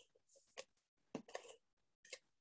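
Faint taps and rustles of cardstock being handled and pressed down by hand while a card is glued together: a soft tap about half a second in, then a short cluster of taps and rustles around the middle.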